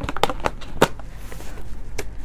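A small plastic gear bag being handled, crinkling and rustling with a few sharp crackles in the first second, then a softer rustle.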